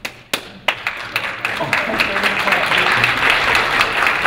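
Audience applause: two single claps, then many people clapping together from about a second in.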